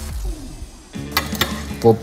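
Background music that cuts off about a second in, then kitchen sounds: two sharp metal clinks of a hot enamel baking tray being handled on the stovetop, over a faint sizzle, followed by a short exclamation.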